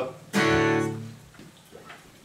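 A guitar strummed once about a third of a second in, the chord ringing and dying away over about a second.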